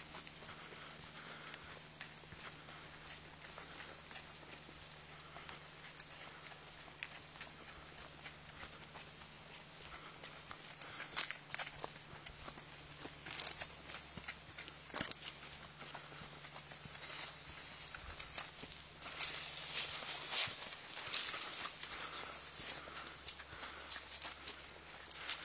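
Irregular footsteps tapping along a dirt forest trail while walking, louder and busier in the last few seconds.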